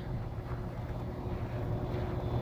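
IVT Air X 90 air-to-water heat pump outdoor unit running in heating mode in deep frost: a steady low compressor hum with a faint steady tone under the even whoosh of the fan. The unit is iced up but still heating, a defrost cycle soon to come.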